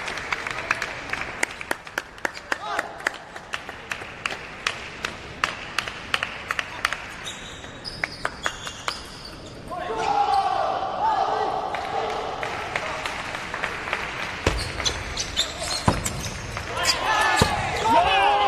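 Table tennis balls clicking off tables and bats, many sharp irregular knocks echoing in a large hall. From about ten seconds in, voices join them, and near the end there is loud shouting.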